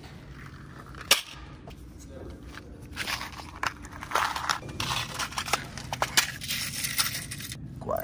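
A sharp snap about a second in. Then several seconds of crackling rustle with many small clicks, as a nylon flag and a small box of tacks are handled; it stops shortly before the end.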